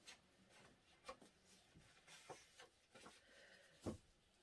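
Near silence with a few faint, scattered taps and soft rubbing: paint being wiped off the edge of a canvas.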